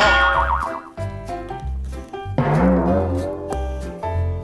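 Children's background music with a pulsing bass line, overlaid with wobbling sound effects: a wavering one at the start and a lower one that bends in pitch about halfway through.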